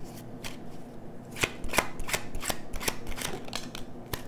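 A deck of tarot cards being shuffled by hand: a run of quick, crisp card snaps and slaps, busiest in the middle.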